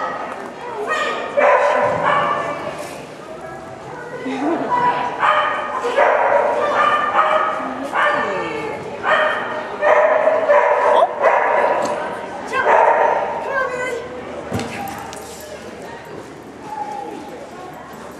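A dog barking and yipping over and over in short bursts as it runs an agility course. The barks come thickest in the middle and thin out near the end, ringing in a large indoor arena.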